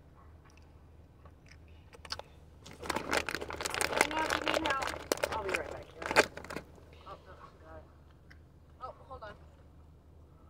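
Crackling, crunching noises mixed with wordless vocal sounds from about three seconds in to six and a half seconds, then a few short faint vocal sounds, over a steady low hum inside a moving car's cabin.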